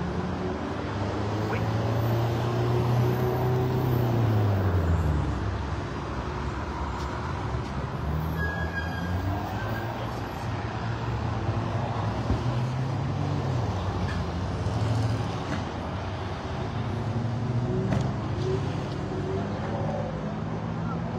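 Street traffic: motor vehicles passing on a city road, with a steady road noise and a heavy engine whose pitch drops about four to five seconds in.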